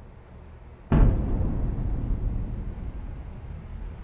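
Faint room tone, then about a second in a sudden heavy low boom that dies away slowly over the next two to three seconds.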